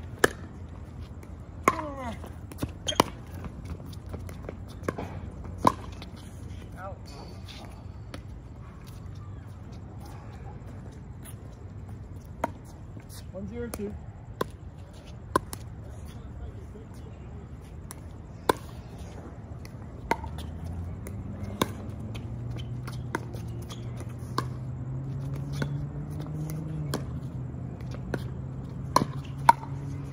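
Sharp pops of pickleball paddles striking the hard plastic ball, coming in irregular runs of a few hits with gaps between. A steady low hum runs underneath and grows louder about two-thirds of the way through.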